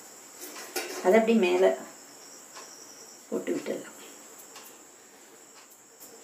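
A voice speaking briefly twice, over a thin, steady, high-pitched whine.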